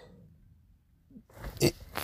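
A man's breath fading out in a pause, then a short throaty vocal noise and an intake of breath about a second and a half in, just before he speaks again.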